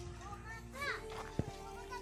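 Faint, distant voices, with a few short pitched calls and a couple of soft clicks over a low steady hum.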